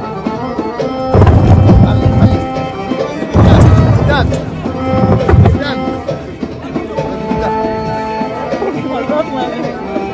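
Music with hand-drum percussion plays throughout. Over it come loud low rumbles about a second in and again around three and a half seconds, the last ending a little past five seconds: a hot air balloon's wicker basket jolting and dragging through sand in a rough landing.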